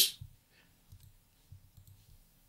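A few faint, scattered computer mouse clicks at a desk, about half a second apart.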